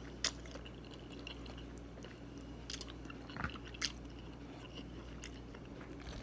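A person chewing a mouthful of food with the mouth closed, working at a bit of gristle, with a few soft wet smacks and clicks over a faint room background.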